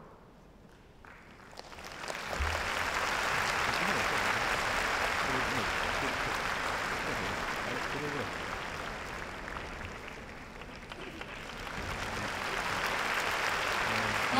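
Large audience applauding and cheering. It begins about two seconds in as the music ends, eases off around ten seconds in, and swells again near the end.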